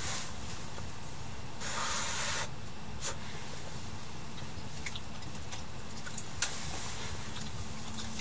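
Fabric rustling briefly about two seconds in, then a few small sharp clicks, the loudest about six seconds in, over a steady low rumble.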